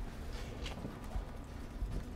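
Light, scattered clicks and knocks over a low rumble: a person handling candles at an iron candle stand.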